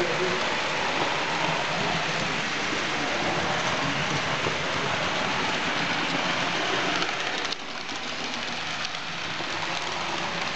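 Model electric locomotive and its train running along the layout's track, heard as a steady rushing rolling noise, with faint voices underneath. The noise drops somewhat about seven and a half seconds in.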